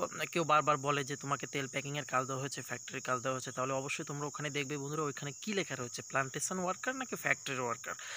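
A steady, high-pitched chorus of insects droning without a break under a man's continuous talk.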